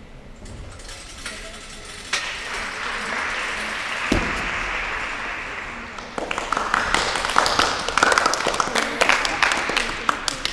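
A few people clapping in a gym hall, the applause starting about six seconds in as a gymnast finishes her routine. It is preceded by a single dull thump near the middle.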